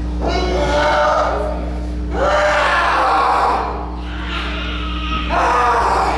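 A small crowd chanting in three swells of many voices together, over a steady low electrical hum.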